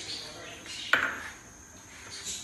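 A metal ladle knocking once against a metal cooking pot: a single sharp clank about a second in, ringing briefly.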